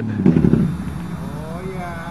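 Chevrolet Cavalier's engine running as the car drives away, its sound dropping off sharply and fading over the first second. A faint voice comes in near the end.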